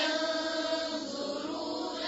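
A woman chanting Quranic verses in melodic tajweed recitation, drawing out long held notes.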